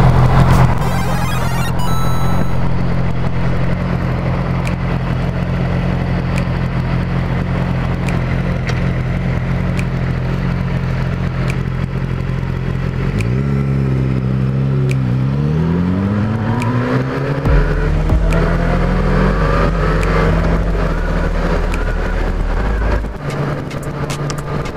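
Motorcycle engine idling steadily at a stop, then pulling away about halfway through, its pitch rising with each gear and dropping back at the shifts.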